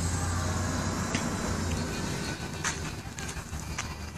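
A low steady rumble that fades away a little past halfway, with a few scattered light clicks.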